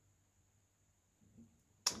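Near silence with a faint, steady high-pitched whine, broken near the end by a single sharp click.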